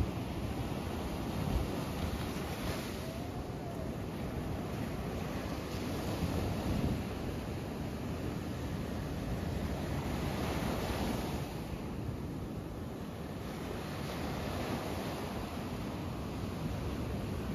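Ocean surf breaking and washing up a sandy beach: a steady rushing that swells and eases every few seconds as each wave comes in.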